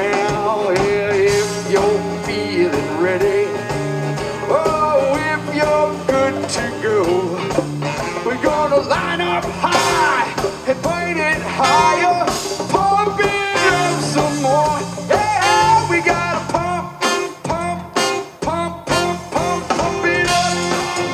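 Live band playing a blues-rock groove: electric guitar, bass, drum kit and hand percussion under a wavering lead melody. Near the end the band plays a run of short, sharp hits with brief gaps between them.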